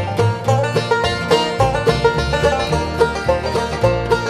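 Bluegrass banjo taking an instrumental break between verses, fast picked notes over upright bass and guitar backing.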